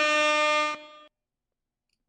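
An air horn sound effect played as a live-stream alert for a Super Chat. Its long held blast ends about three quarters of a second in and fades out quickly.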